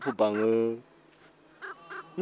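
A voice speaking dubbed film dialogue in the Southern Yi (Nisu) language. It breaks off just under a second in, leaving a short pause with only faint sounds.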